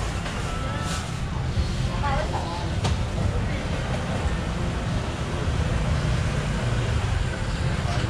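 Outdoor street-market bustle: scattered customer voices over a steady low rumble of street traffic, with a single sharp knock about three seconds in.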